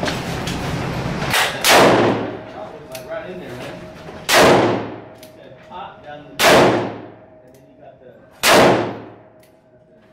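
Handgun fired four times at an indoor range, slow aimed shots about two seconds apart. Each sharp report is followed by a short echoing tail off the range walls.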